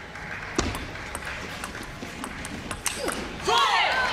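Table tennis ball being hit back and forth in a short rally, a sharp click of bat on ball or ball on table about every half second.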